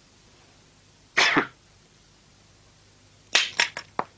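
Short, sharp, breathy bursts from a dubbed kung fu fight soundtrack: one about a second in, then three in quick succession near the end, as the fighters square off.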